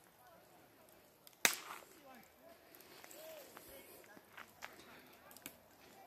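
Mostly quiet outdoor sound with one sharp crack about a second and a half in, followed by a few faint scattered ticks.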